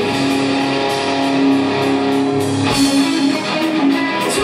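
Live rock band playing: sustained electric guitar chords over bass and drums. About three-quarters of the way through, the low end drops away.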